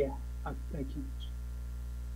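A steady low electrical hum on the audio line, with a brief spoken word and faint speech fragments in the first second.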